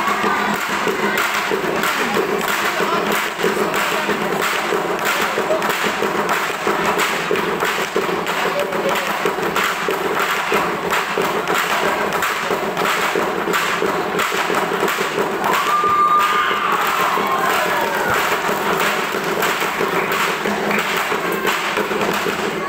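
Steady, even percussion beat of live dance accompaniment, with a crowd murmuring underneath. A brief rising and falling call stands out about sixteen seconds in.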